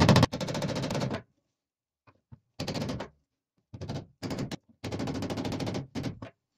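Claw hammer tapping rapidly on brass pins set through an axe's wooden handle scales, peening them tight, in several quick runs of strikes; the first run is the loudest.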